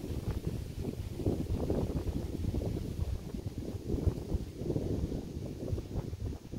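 Wind buffeting an outdoor microphone: an uneven low rumble that swells and fades in gusts.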